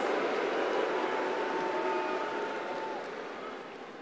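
Large arena crowd applauding and cheering, dying away over the last second or so.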